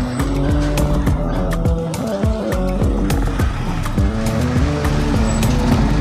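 Music with a steady beat and a stepping bass line, over the noise of traffic passing on a city street.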